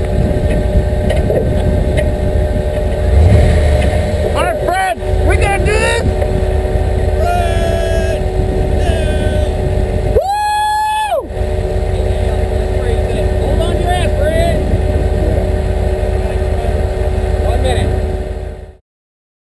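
Off-road race vehicle's engine idling steadily while the vehicle stands still, with voices calling out nearby. A loud held tone lasts about a second, roughly halfway through.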